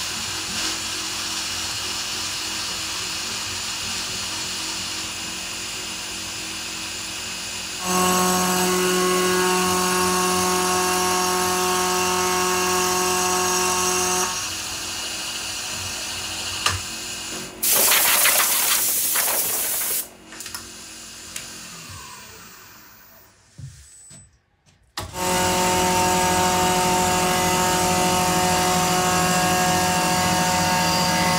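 Vertical milling machine running, its end mill cutting into a wooden handle blank clamped in a vise. The cutting grows louder for a few seconds and there is a brief loud rush, then the spindle winds down with a falling whine and goes quiet. Near the end it starts up loudly and cuts again.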